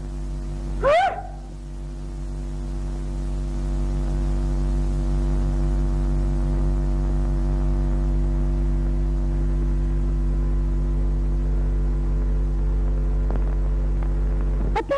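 A steady low hum with a stack of even overtones, growing louder over the first few seconds and then holding level. A brief voiced exclamation comes about a second in.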